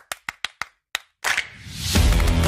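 A rapid run of sharp claps, about eight in the first second, followed by a rising whoosh that swells louder toward the end: an outro sound effect.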